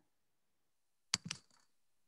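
Near silence, broken about a second in by two short knocks a fraction of a second apart.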